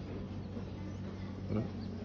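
Steady high-pitched insect buzz, like crickets or cicadas, over a low steady hum, with a brief voice sound near the end.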